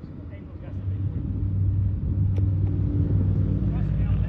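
A vehicle engine running steadily with a low hum, growing louder about a second in. A single sharp click comes a little past halfway.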